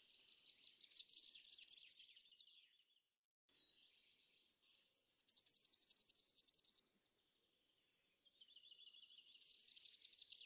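A songbird singing the same short phrase three times, about four seconds apart: a couple of high notes sweeping down, then a fast, even trill lasting over a second. Fainter chirps from other birds fill the gaps.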